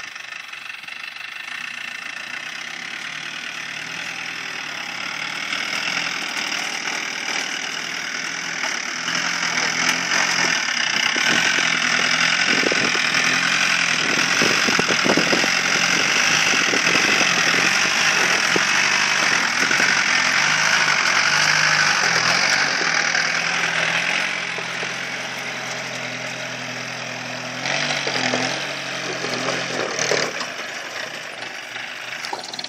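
Engine of a customized off-road jeep running under load as it drives over dirt mounds. It grows louder from about six seconds in, stays strong until about twenty-four seconds, then eases off, with a brief rise again near the end.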